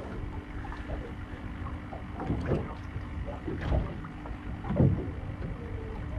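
Water slapping against a small fibreglass boat's hull several times, over a low rumble of wind on the microphone and a faint steady hum.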